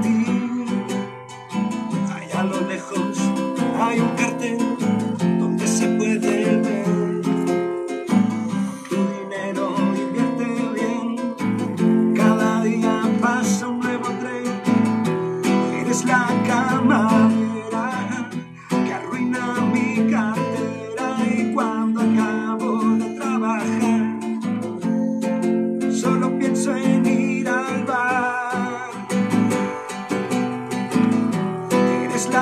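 Acoustic guitar strummed and picked in a live song performance, with a man singing over it in stretches.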